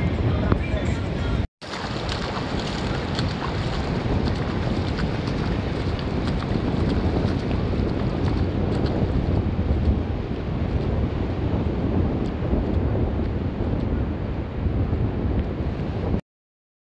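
Wind buffeting the microphone over the steady rush of surf breaking on a beach, cut off briefly about a second and a half in.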